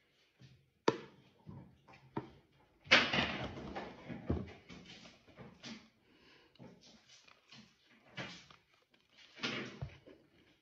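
A sharp click about a second in, then a loud crunch as a toasted English muffin topped with cottage cheese is bitten into about three seconds in, followed by scattered chewing sounds.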